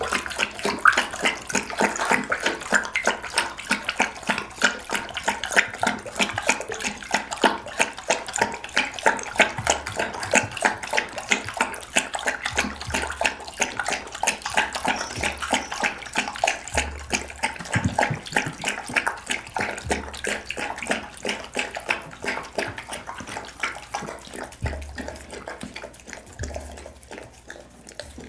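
A pit bull lapping homemade vegetable soup from a glass bowl with its tongue: a rapid, steady run of wet slurping laps that goes on without a break.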